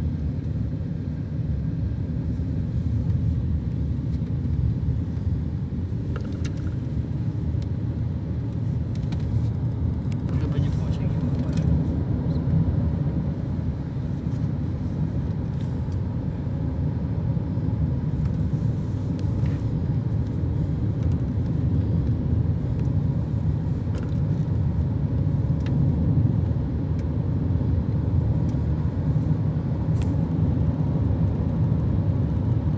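A moving car heard from inside the cabin: a steady low rumble of tyre and wind noise while driving.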